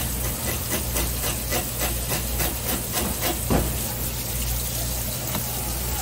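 Running water spraying onto a plastic cutting table over a steady low hum, with a quick series of light knife clicks, about four a second, for the first half as a knife scores narrow V-shaped cuts into a flounder.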